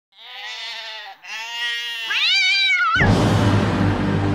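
Three pitched animal cries in a row, the last one wavering up and down, then music starts loudly about three seconds in.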